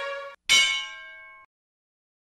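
Outro logo sting: the tail of a held brass chord cuts off, then about half a second in a single bell-like chime strikes, rings for about a second and stops abruptly.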